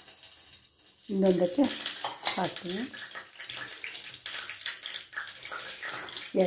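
A woman's voice speaking briefly, then a steady hiss with many small clicks.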